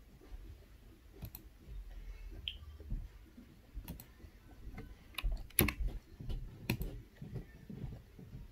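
Scattered, irregular clicks and taps of someone working a computer's mouse and keyboard, about ten over several seconds, the loudest a little over halfway through.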